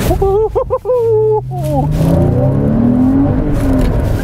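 Porsche Cayman S 3.4-litre flat-six engine accelerating, its pitch rising steadily as the revs climb, heard from inside the cabin.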